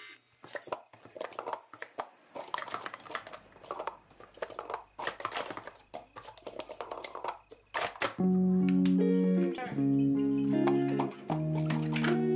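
Rapid runs of light clacks from plastic sport-stacking cups being stacked up and down on a mat. About eight seconds in, much louder guitar music comes in.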